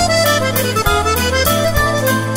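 Accordion playing a waltz: a melody over held bass notes, with a steady beat.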